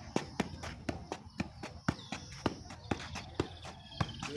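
A football being juggled on the feet: quick, fairly even thuds of the ball off the boot, about three to four touches a second.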